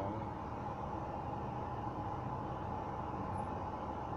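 Steady hum and hiss inside a car's cabin, with a faint steady whine over it.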